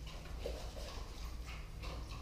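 A dog moving about close by, making short soft sounds a few times a second, over a steady low hum.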